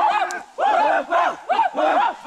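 A group of men shouting war cries together, many voices in quick rising-and-falling calls that overlap, loud, with short breaks about half a second in and near the end.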